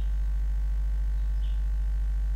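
Steady low electrical hum with evenly spaced overtones, unchanging throughout.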